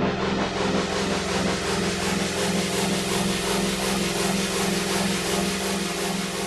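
Alesis Fusion synthesizer playing a sound patch: a sustained, gritty low drone that pulses about twice a second under a bright, noisy upper layer.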